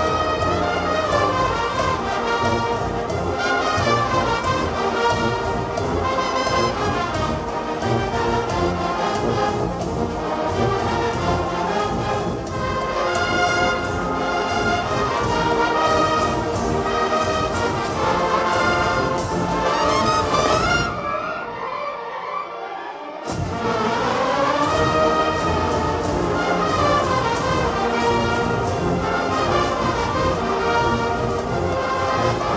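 A massed wind band of brass and woodwinds, with trumpets and flutes, playing a son. About 21 seconds in the band drops to a brief quieter passage with the bass gone, and about two seconds later the full band comes back in.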